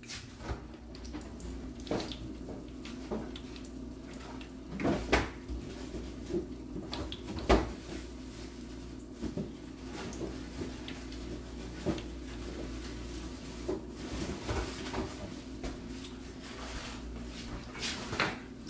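Scattered knocks and clicks of someone handling things in a kitchen, over a steady low hum. The loudest knocks come about five seconds and seven and a half seconds in.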